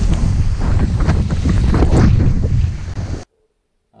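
Loud wind blasting the microphone of a camera mounted on a windsurf rig moving at speed through breaking waves, with water rushing and splashing under it. It cuts off suddenly a little over three seconds in.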